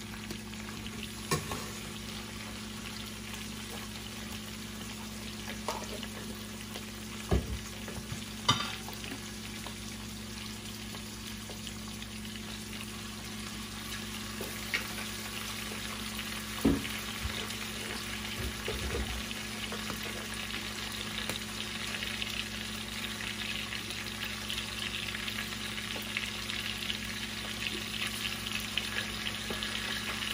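Conch meat frying in a stainless steel pot, sizzling steadily and getting louder from about halfway, with a few sharp knocks of a metal spoon against the pot in the first half.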